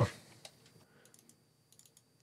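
A few faint computer keyboard keystrokes, short scattered clicks.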